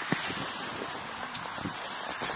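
Faint outdoor background: a steady hiss with one brief click just after the start.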